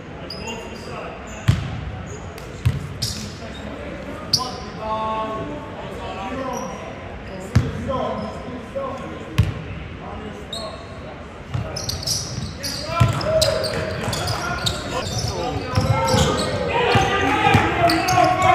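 Basketball bouncing on a sports-hall floor: single sharp bounces a second or two apart through the first half, around free throws, ringing in the large hall. From about twelve seconds in, live play brings a busier, louder run of bounces under indistinct shouting voices.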